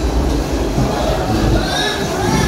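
Log flume ride's boat running through a dark tunnel: a steady low rumble with rattling, like a train car. Faint show music starts to come in near the end.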